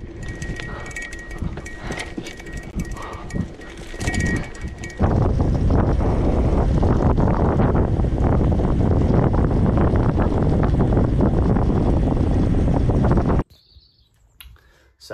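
Mountain bike ridden along a dirt trail, with rattling and a thin high tone. About five seconds in, a cut brings a louder, steady rush of wind and tyre noise on a tarmac lane, which cuts off suddenly near the end.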